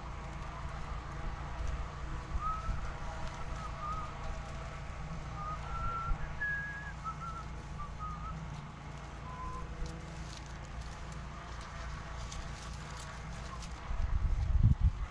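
Low wind rumble on the microphone throughout, with a run of short, faint bird chirps in the middle. Light rustling and scratching of coconut palm leaflets being wiped with a cloth.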